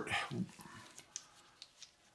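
A man's voice trails off, then a few faint, short clicks as the removed spark plugs are handled in gloved hands.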